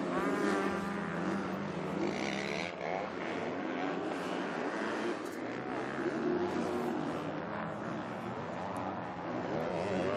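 Several motocross bikes racing together on a dirt track, their engines revving up and down through the gears, with the overlapping engine notes rising sharply in the first few seconds.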